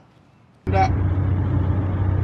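Steady low rumble of a running motor vehicle, as heard from inside it, cutting in abruptly about two-thirds of a second in, with a brief voice over it.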